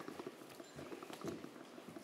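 Faint, irregular taps and rustles of papers being handled at a lectern, picked up by the lectern microphone over quiet room noise.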